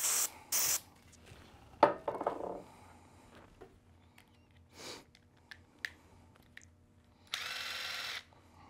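Two short hisses of an aerosol degreaser sprayed onto a microfiber rag to clean a screw's threads, then near the end a small power driver whirring steadily for under a second.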